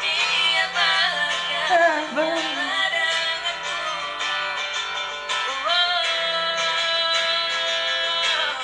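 A girl and a boy singing a slow Indonesian pop ballad as a duet over backing music. A long held note starts about six seconds in.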